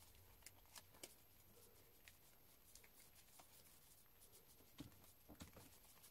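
Near silence with faint, scattered clicks of photocards in plastic sleeves being handled and sorted by hand.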